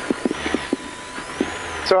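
Citroën R5 rally car heard from inside its cabin with the engine running at idle: a low steady hum under a steady hiss, with a few short clicks in the first second or so.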